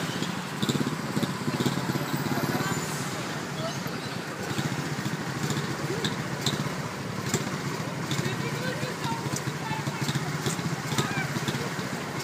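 Street noise: a steady traffic rumble with people talking indistinctly in the background.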